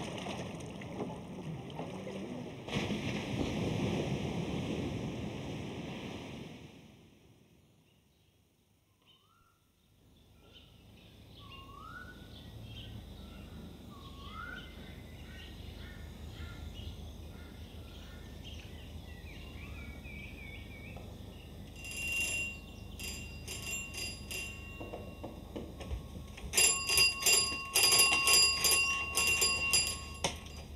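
A steady rush of wind and sea fades out over the first several seconds to near silence. Small birds then chirp in short rising calls over a faint low hum. Near the end comes a quick run of sharp metallic clinks and clatters.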